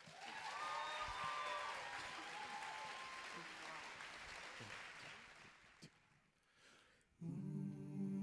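Audience applause and cheering with a few whoops, starting suddenly, then dying away over about six seconds. Near the end a men's a cappella group comes in with a sustained hummed chord.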